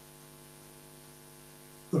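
A low, steady electrical hum: several even tones stacked one above another, unchanging throughout. A voice begins at the very end.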